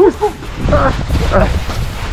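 Short shouted calls over a steady low rumble of wind buffeting the microphone while riding.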